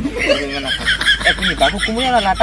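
A person's voice talking and snickering with laughter.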